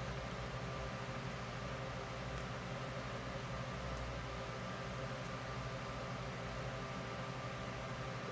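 A room fan running: a steady, even hiss with a low hum underneath, with no distinct sounds standing out.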